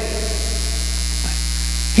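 Steady low electrical mains hum with no other sound, the kind picked up by a sound system or recording chain.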